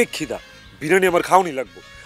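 A wavering, bleat-like cry, brief at the start and longer about a second in, with its pitch rising and falling several times, over background music.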